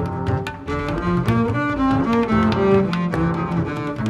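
Instrumental music: a double bass plays a moving melodic line of distinct notes, with sharp ticks sounding throughout.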